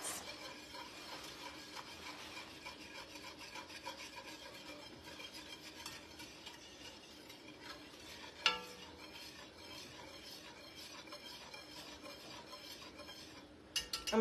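A wire whisk stirring a hot milk and lime-gelatin mixture in an enamelled cast-iron pot: a soft, steady, rapid scraping and swishing. There is one brief louder sound a little past halfway.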